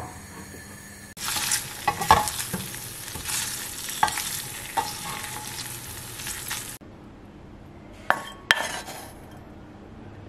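Diced pancetta sizzling in an aluminium frying pan while a wooden spoon stirs it, with a few knocks of the spoon against the pan. The sizzling starts about a second in and stops abruptly about two-thirds of the way through, followed by two sharp knocks.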